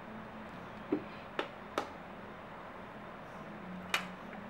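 Low steady room noise broken by four short, sharp clicks or taps: three close together between about one and two seconds in, and one more just before the end.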